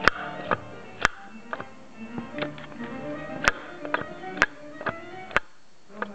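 Sharp metallic clicks and knocks, about ten at irregular intervals, from a tool working at the big end of a seized rear cylinder's connecting rod, a big end that is ruined. Faint background music plays underneath.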